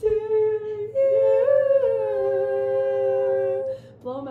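Young women's voices holding long, drawn-out notes together in two-part harmony, in a small room. Partway through, one voice slides up and back down.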